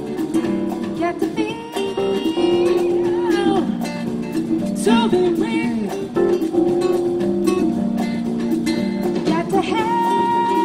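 Live band playing a song: singing with vibrato over a strummed acoustic guitar, with congas, upright bass and keyboard.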